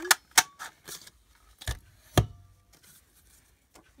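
Hard plastic clicks and knocks from a large square craft paper punch being handled and set down. About half a dozen sharp knocks, the loudest about two seconds in, then quiet.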